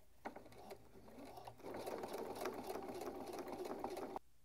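Domestic sewing machine stitching through plastic boning and fabric: a few light clicks in the first second, then the machine starts slowly and runs steadily from about one and a half seconds in.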